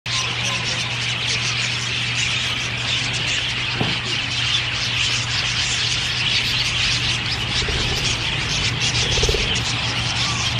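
Dense, steady chatter of a flock of budgerigars (parakeets) in an aviary, many short chirps running together, over a steady low hum.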